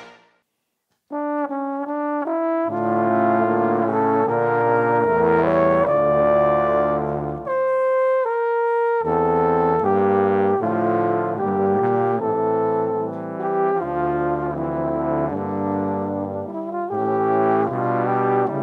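Multitracked trombone quintet, four tenor trombones and a bass trombone, playing slurred, sustained lines in close harmony. After about a second of silence the upper line begins alone, and the lower voices join about a second and a half later.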